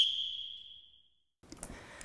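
A high, steady electronic beep tone from the show's bumper fades away within the first second, followed by a moment of dead silence. Faint studio room sound with a few small clicks comes in near the end.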